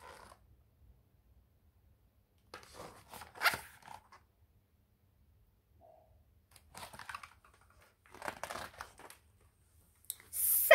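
Paper rustling in three short bursts as the pages of a picture book are handled and turned.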